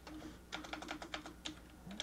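Computer keyboard being typed on: a quick, irregular run of faint keystrokes.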